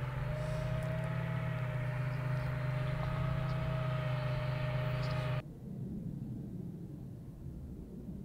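Steady low vehicle engine drone with a thin steady whine above it, cut off suddenly about five seconds in, then a fainter low rumble.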